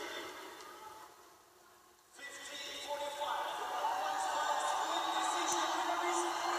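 Arena public-address announcer's drawn-out voice reading the decision over the crowd; the sound dies away to near silence for about a second, then the voice and crowd grow steadily louder.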